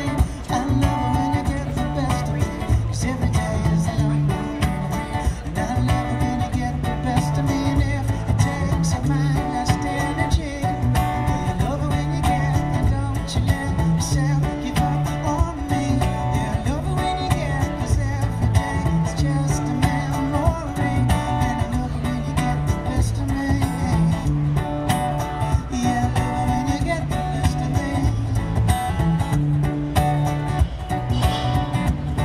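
Steel-string acoustic guitar being strummed, with a man singing over it.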